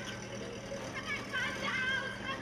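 Film soundtrack played back from a screen: a woman shouting after a truck ("Stop that truck!"), over street noise and the rumble of a vehicle driving off.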